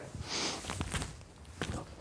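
A man's forceful breath out, followed by a few soft thumps and shuffles of feet on the floor as he attempts a handstand.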